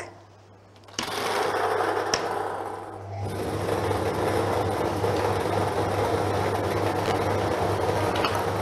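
Three-chamber lottery draw machine releasing its numbered balls and mixing them: a sudden clatter about a second in as the balls drop into the clear plastic chambers, then from about three seconds a steady motor hum under the continuous rattle of balls tumbling.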